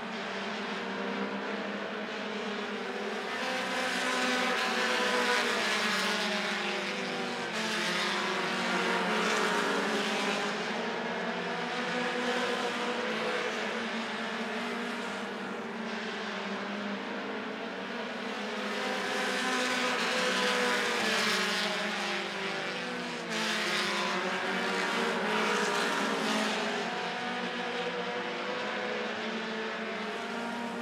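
Several short-track stock car engines running hard at racing speed, their pitch rising and falling together as the cars work the corners and straights. The sound swells and fades every several seconds as the cars come round.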